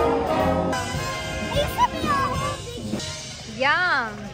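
Live band with a brass section playing, louder for the first moment and then softer. Near the end a short voice rises and falls in pitch.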